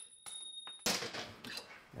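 Metal tool clinking and knocking against a tight bolt and its steel bracket as the bolt is worked loose, with a sharp knock about a second in followed by a few lighter clicks.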